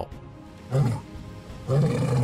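Male lion giving short, deep grunting calls, about one a second: two in quick succession, the second starting near the end.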